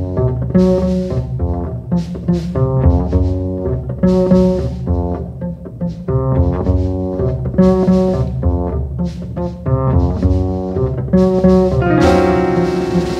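Acoustic double bass played pizzicato, plucked with the fingers in a melodic line of short notes that come in groups with brief gaps between phrases.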